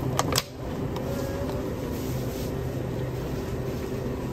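Steady hum of a convenience store's refrigerated display case and ventilation fans. Near the start come a couple of sharp clicks as a plastic-lidded packaged meal is lifted off the shelf.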